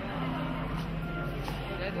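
Indistinct voices of people talking over a steady low rumble of outdoor background noise.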